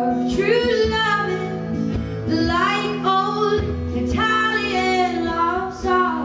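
A woman singing long, held phrases of a slow ballad, accompanied by an acoustic guitar.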